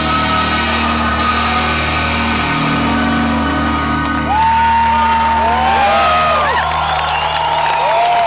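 A live rock band's final chord ringing out as a steady sustained drone. About four seconds in the chord drops away to a low held note, and the crowd starts cheering, with whistles and whoops gliding up and down.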